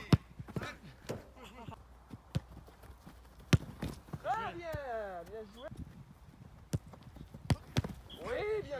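A football struck and caught during goalkeeper drills: a handful of sharp thuds of boot on ball and ball hitting gloves or ground, a few seconds apart.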